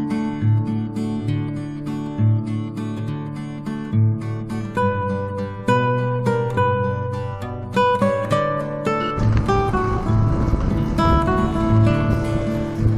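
Background music of plucked acoustic guitar, notes picked one after another with sharp starts. About nine seconds in, a rough, noisy background layer joins beneath the guitar.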